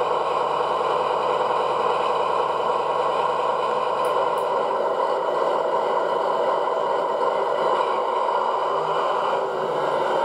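Onboard DCC sound decoder of a Lenz O gauge DB V100 (BR 212) model diesel locomotive playing its diesel engine sound through the model's small speaker, running steadily while the loco creeps along at very slow speed.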